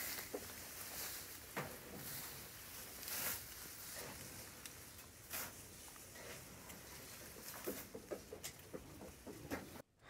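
Sheep pushing through tall oat stalks: a steady rustling with many small crackles and clicks as the stalks are trampled and brushed. It stops abruptly near the end.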